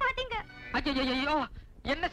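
Film dialogue, people talking, with one drawn-out, quavering vowel held for about half a second near the middle.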